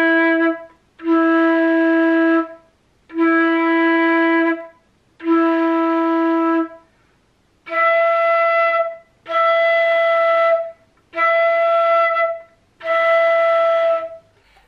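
Concert flute playing a series of held E notes, each about a second and a half long. Four are in the low octave, then four an octave higher. They show the note E with and without the D-sharp key pressed: without the key the E is less clear and less well in tune.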